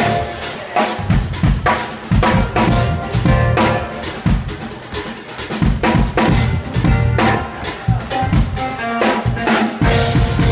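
A live band playing. A drum kit with kick drum, snare and cymbals keeps a steady beat under held keyboard and synthesizer notes.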